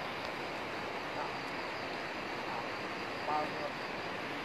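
Steady outdoor rushing noise, with faint distant voices briefly about a second in and again near the end.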